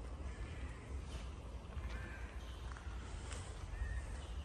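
Birds chirping in short, scattered calls over a steady low rumble.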